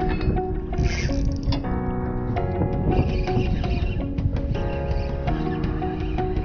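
Background music: strummed guitar holding steady chords.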